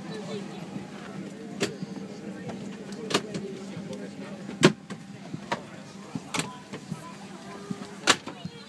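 Inside an airliner cabin: a steady low hum under the murmur of passengers' voices, broken by about five sharp clicks and knocks, the loudest about halfway through.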